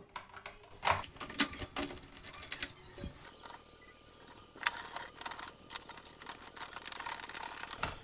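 A screwdriver backing small screws out of a plastic fan housing: a run of irregular light clicks and scrapes, busier in the second half.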